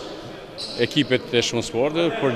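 A man speaking in a large sports hall, with a basketball bouncing on the court in the background. The first half second is quieter, and the talk picks up after it.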